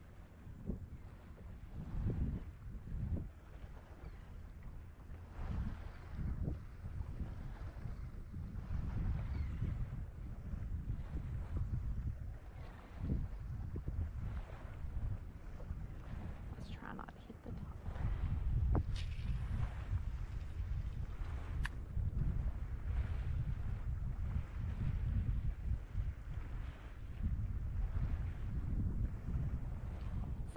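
Wind buffeting the microphone in uneven gusts, a low rumble that grows stronger a little past halfway, with a few faint sharp clicks in the middle.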